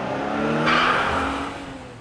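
Car sound effect: an engine note with a rush of tyre noise that swells about a second in, then fades away.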